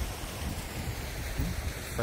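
Shallow rocky river rushing over stones in a steady wash of noise, with wind buffeting the microphone.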